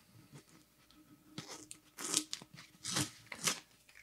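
Blue tape being peeled and torn off a 16 oz beer can in a few short, crackly rips, starting after the first second or so.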